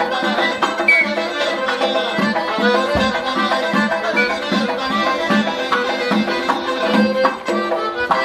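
Folk dance music from an accordion and a doira frame drum: the accordion plays a busy melody over a steady beat of drum strokes.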